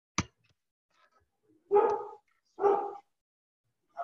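A dog barking twice, about a second apart, after a short sharp click.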